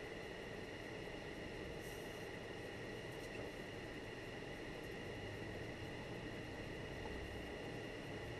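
Steady car-interior noise from a car driving slowly on a snow-packed road: a low rumble under a thin, steady high whine, with a brief hiss about two seconds in.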